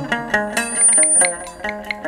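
Chầu văn ritual music: a plucked string instrument playing a quick melody over sharp, regular clicking percussion, with a brief high ringing tone about a second in.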